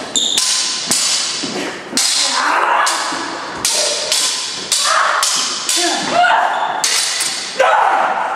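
Steel longswords clashing in a stage-combat fight: a rapid, irregular series of about ten blade-on-blade strikes, each ringing on briefly after the hit.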